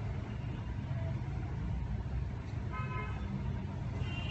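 A steady low background rumble, with a short horn-like toot about three seconds in.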